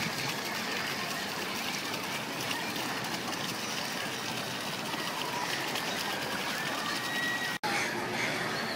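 Small garden fountain jet splashing steadily into its stone basin, with faint voices in the background. The sound drops out for an instant near the end.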